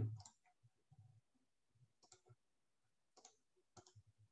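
A few faint computer mouse clicks in the second half, against near silence: a right-click bringing up the slideshow menu to erase pen annotations.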